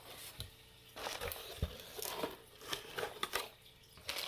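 Plastic packaging crinkling in short, scattered bursts, with a few light knocks, as hands rummage through plastic air pillows and plastic-wrapped tins in an opened cardboard box; the first second is quieter.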